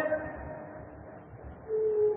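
A pause in a man's speech: his phrase trails off at the start, then it is quiet apart from a short, faint single-pitched tone near the end, like a brief hum.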